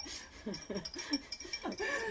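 Two women laughing, in short rising and falling peals.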